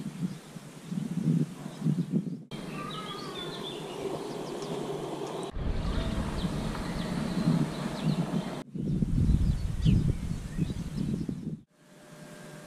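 Outdoor ambience in short clips joined by abrupt cuts: gusts of wind buffeting the microphone, with birds singing between about two and five seconds in.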